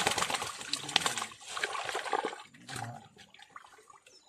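Live fish thrashing in a wicker basket of muddy water, a dense run of splashes and slaps that dies down after about two and a half seconds.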